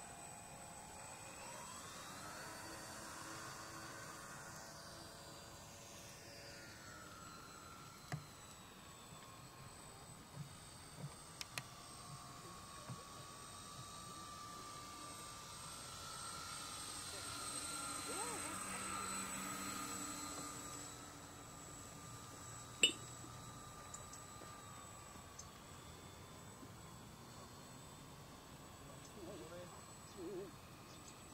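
The motors of a radio-controlled scale model of a Short S.26 four-engined flying boat whine. The pitch rises early as the model speeds up across the water and lifts off. The whine grows loudest as it flies past, about two-thirds through, then the pitch drops. A single sharp tick comes just after the loudest part.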